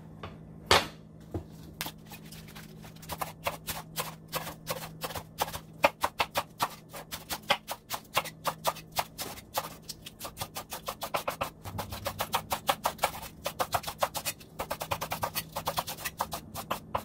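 Kitchen knife chopping iceberg lettuce on a bamboo cutting board: quick crisp strokes, several a second, with a short pause about two-thirds of the way through. A single louder knock comes about a second in, and a faint steady low hum runs underneath.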